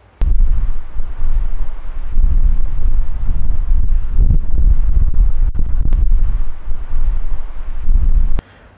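Strong wind buffeting a clip-on microphone: a heavy, gusting low rumble that starts abruptly just after the beginning. A few faint clicks sound through it.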